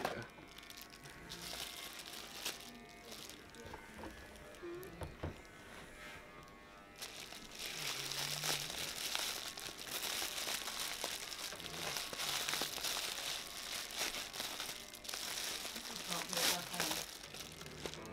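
Plastic bubble wrap crinkling and rustling as it is pulled off and unwrapped by hand. It is sparse at first, then continuous and louder from about seven seconds in until near the end.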